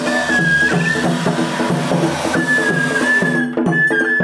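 Japanese festival hayashi music played live from a hikiyama float: a bamboo transverse flute holds a high melody over a steady beat of taiko drums.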